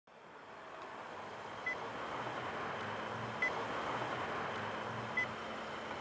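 Gas station ambience with a gas pump dispensing fuel, fading in from silence: a steady noisy hum with a low pulsing drone, and a short high beep three times at even spacing.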